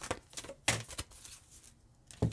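Tarot cards being shuffled and handled: a few short, separate card clicks and taps, the sharpest a little under a second in.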